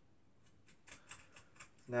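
Faint, irregular light clicking of small metal parts as a 5 mm nut is fitted by hand onto a 5 mm wheel bolt on a carriage plate.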